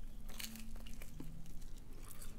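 Faint sounds of a chewy flatbread pizza being torn apart by hand, with quiet chewing.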